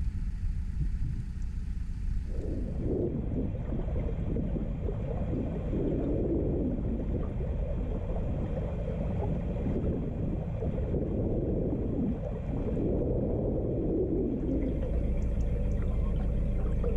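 Narrowboat under way: its engine runs with a steady low rumble, and an uneven rush of water, or of wind on the microphone, comes in about two seconds in.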